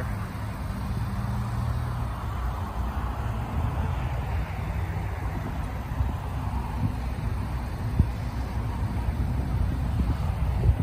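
Outdoor rumble, mostly wind buffeting the microphone, with a steady low hum underneath and a single light knock about eight seconds in.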